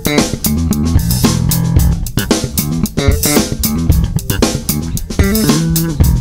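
Handmade Wyn five-string electric bass played through an amp: a steady run of quick plucked notes with sharp attacks.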